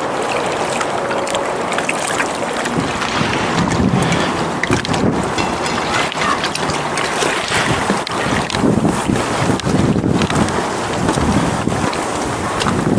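Wind blowing on the camera microphone, with gusts of low rumbling buffeting from about three seconds in, over the wash of small waves on the shore.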